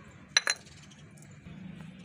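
A small stainless-steel bowl clinks twice in quick succession as it is set down, a bright, brief metallic ring.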